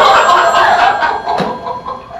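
A theatre audience laughing loudly, the laughter dying away over about a second and a half.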